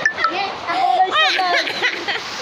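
Children's excited voices, chattering and calling out, with a high rising-and-falling cry a little past one second in.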